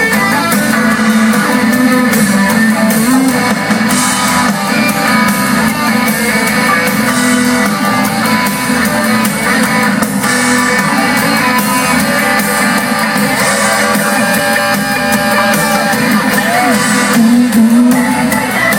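Live band playing loudly, electric guitars to the fore.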